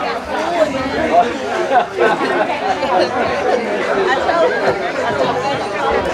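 Several people talking at once: overlapping, unclear conversation with no single voice standing out.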